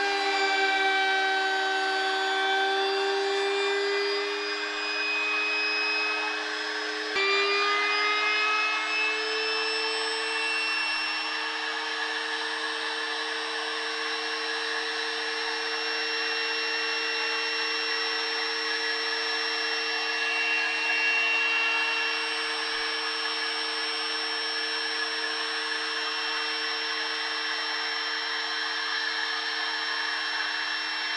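Router motor running with a steady high tone while the bit cuts wood in a tenoning jig. About seven seconds in there is a click, after which the motor's pitch climbs slightly and then holds steady.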